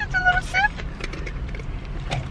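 Low, steady rumble of a car cabin, with two short high-pitched vocal sounds near the start, the second rising in pitch.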